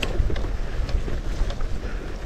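Wind buffeting the camera microphone while a mountain bike rolls over grass and dirt, making a steady low rumble with a few light clicks and rattles from the bike.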